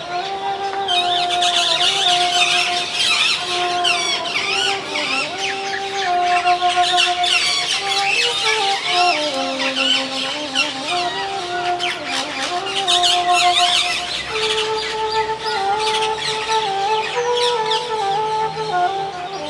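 Bansuri (bamboo transverse flute) playing a slow melody of long held notes that move by steps, sinking to its lowest around the middle and climbing again. Many birds chirp busily behind it from about a second in.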